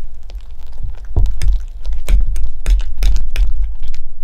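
Fork clicking and scraping against a dish while scooping mashed potato: a quick run of sharp clicks over low knocks.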